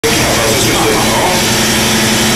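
Loud, steady wall of noise from a live noise-music performance, with a steady low hum underneath and snatches of a man's voice.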